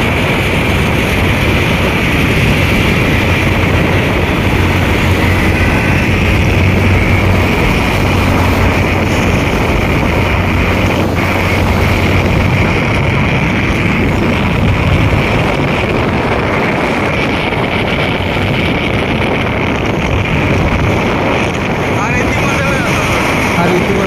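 Steady wind rush on the microphone mixed with road and engine noise from a vehicle travelling at speed on a highway, with a low steady engine hum through the first half.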